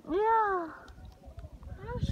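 A single drawn-out vocal call lasting under a second, rising and then falling in pitch.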